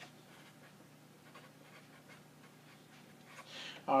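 Felt-tip marker writing on paper: a run of faint, short scratching strokes as letters and numbers are written.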